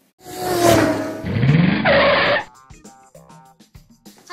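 Edited-in sound effect at a scene change: a loud rushing burst of about two seconds with a rising pitch sweep, followed by quieter music.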